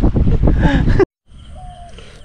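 A laugh over heavy wind noise buffeting the microphone. About a second in, the sound cuts off abruptly, leaving faint outdoor ambience with a short, thin tone.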